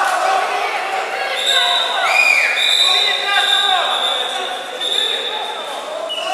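Voices and shouts of spectators and officials in a large sports hall around a wrestling mat. From about a second and a half in, a long high steady tone sounds three times with short gaps, over the voices.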